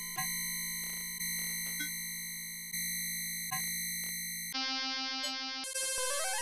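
Electronic synthesizer tones from a Max 8 patch: a buzzy sustained chord of steady pitches, retriggered every second or so and slowly fading between hits, with short chirping blips. About three-quarters of the way in the tone changes to a thinner, higher sound, and near the end a quick run of stepped pitches climbs upward.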